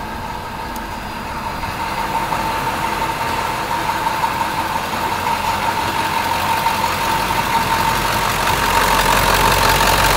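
2000 Ford 7.3L Power Stroke V8 turbo diesel idling, with a steady high whine over the engine note, growing steadily louder.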